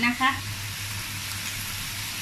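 Shellfish frying in a hot wok, a steady sizzle during a stir-fry.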